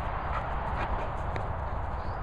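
A Bernese Mountain Dog's paws thudding on grass as it trots and runs close by, over a steady low rumble.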